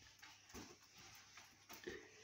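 Near silence, with faint rustling of clothing and a few light knocks as children pull on coats and scarves.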